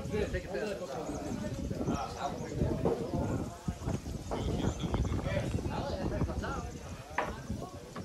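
Footsteps on a wooden boardwalk: repeated hollow knocks at a walking pace, with people talking in the background.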